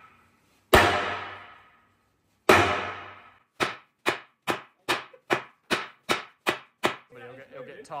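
Sledgehammer striking the steel hull of an FV4005 tank: two heavy blows about a second in and two and a half seconds in, each ringing out for over a second, then a quick run of about nine lighter strikes, two or three a second.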